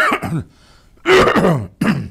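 A man clearing his throat in three rough bursts: one at the start, a longer one about a second in, and a short one near the end.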